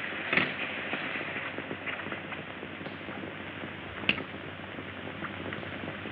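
A steady hiss with scattered faint crackles and two sharp clicks, one about half a second in and a louder one about four seconds in.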